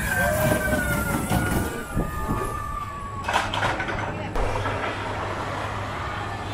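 Small roller coaster train rolling past on its steel track, a low rumble with a whine that falls in pitch, fading over about three seconds. A short hiss follows about three seconds in.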